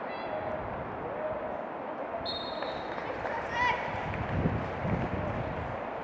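Youth football match: shouts and calls from players and spectators over an open-air hiss, with a short, flat, high whistle a little over two seconds in and two dull thumps about a second later.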